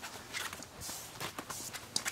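A Pembroke Welsh Corgi puppy's paws and claws scratching and pattering on the floor as it scampers about, several steps a second, with a light click near the end as a glass Christmas ornament knocks against another.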